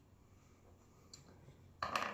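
Near silence, room tone, for most of the moment, then a sudden burst near the end, the start of a laugh.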